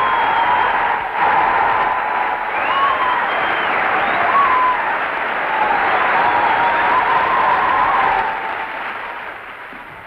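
Studio audience applauding, with thin wavering tones rising and falling above the clapping, fading away over the last couple of seconds.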